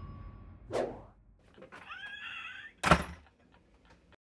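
A wooden cabin door shutting with a single sharp thud about three seconds in.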